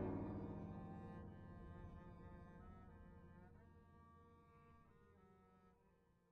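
Background music of low sustained chords that swell at the start and then slowly fade away.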